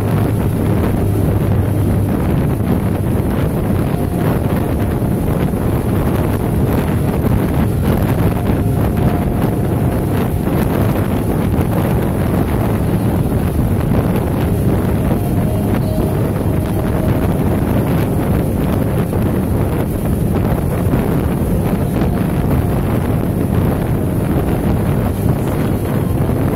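Steady, loud road and wind noise from a vehicle moving at speed, with wind rushing over the microphone and a low rumble underneath.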